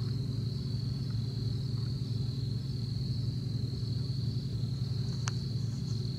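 Insects chirping in a steady high-pitched chorus over a steady low hum, with a single sharp click about five seconds in.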